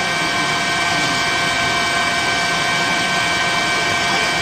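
News helicopter's turbine engine and rotors running steadily on a live aerial camera feed: an even rushing noise with a few steady whining tones.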